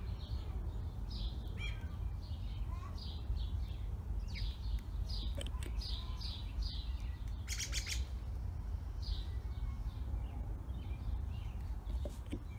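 Birds chirping: short, high, downward-sweeping chirps repeated every second or so, over a steady low rumble. A brief rattle of clicks sounds about two-thirds of the way through.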